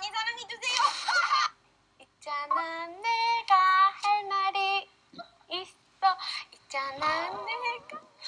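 High-pitched young women's voices from a Korean TV variety-show clip, talking and singing in a sing-song way with some notes held. The voices come in several short phrases with brief pauses between them.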